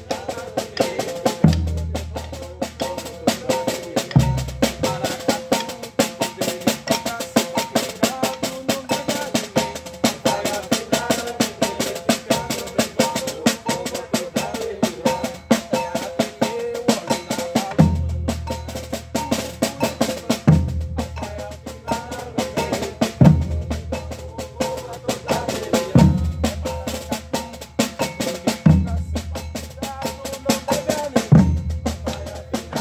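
Maracatu drum ensemble playing: a snare drum keeps up a fast, continuous stream of strokes while rope-tuned alfaia bass drums add deep strokes. The deep strokes come twice early on, drop out for a long stretch, then return about every two and a half seconds in the second half.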